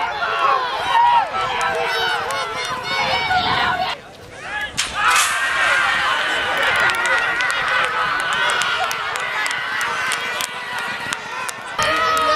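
Race crowd shouting and cheering, many voices overlapping, with a brief drop in level about four seconds in. Sharp clicks run through the later part.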